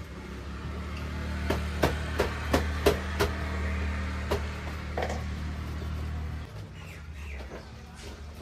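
Sharp knocks and clatter of goods being set down and shifted on wooden shelves, about eight between one and five seconds in, over a low steady engine-like hum that drops away about six and a half seconds in.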